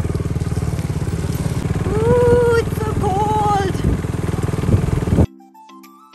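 A motor vehicle's engine running with a steady low pulsing rumble, cutting off abruptly about five seconds in. Soft music with short plucked notes takes over.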